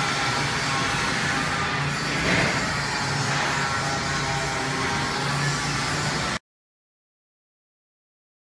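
Steady hum and noise of a building site with the caster-wheeled wooden stand of an eyewash station being pushed across the concrete floor. The sound cuts off suddenly about six seconds in.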